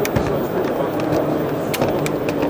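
Steady background chatter of a busy exhibition hall, with a few sharp clicks: two just after the start and one near the end. The clicks come from a Sachtler Flowtech carbon-fibre tripod leg being moved through its angle-lock positions.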